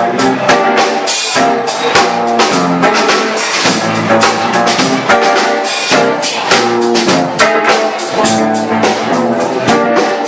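Live funk band playing: a drum kit keeps a steady beat under electric guitar lines.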